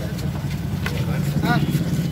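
A vehicle engine running with a steady low rumble.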